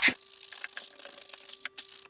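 Sanding stick rubbing fast across the edge of a thin plywood centering ring, putting a flat on it: a steady, unbroken hiss, followed by a few sharp clicks near the end.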